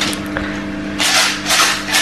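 A small plastic jar filled with small pieces rattling as it is shaken, in repeated bursts starting about a second in, over a steady low hum.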